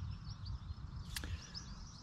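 Faint outdoor background: small birds chirping over a low rumble, with one sharp click about a second in.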